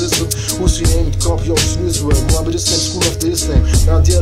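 Hip hop track: a man rapping over a deep bass line and a drum beat.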